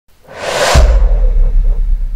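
Logo intro sound effect: a whoosh swells up and breaks into a deep bass boom just under a second in, which rings on low and steady.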